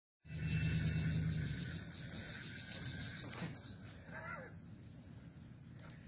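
Night-time outdoor ambience by the water: a steady hiss and hum with a few high steady insect tones, louder in the first second or two, with a faint voice briefly about four seconds in.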